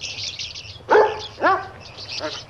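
A small dog yaps twice, about a second in and again half a second later, over continuous high chirping of birds: pet-shop ambience from a film soundtrack.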